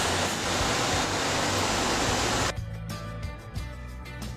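Loud, steady rushing noise with a low hum under it, the factory-floor sound at the camera. It cuts off suddenly about two and a half seconds in, and background music takes over.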